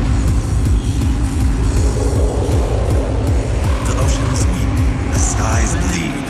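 Hardcore/industrial techno DJ mix: a fast, dense kick-drum beat, with a sampled voice coming in over it about four seconds in.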